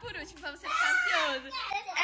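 A young child's high-pitched voice, excited, its pitch sliding up and down, with no clear words.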